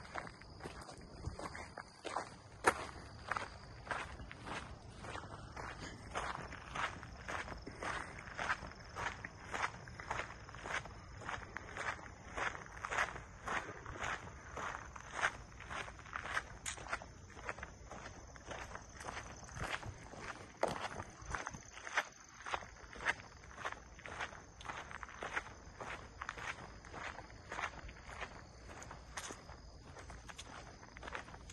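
Footsteps of someone walking at an even pace on a dirt trail, about two steps a second.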